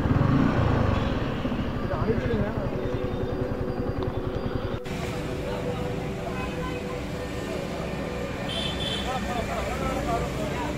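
Motorcycle engine running, with faint voices in the background; the sound breaks off abruptly about halfway through and resumes with a steadier engine tone.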